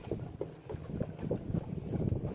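Wind buffeting a phone's microphone: an uneven, gusty low rumble.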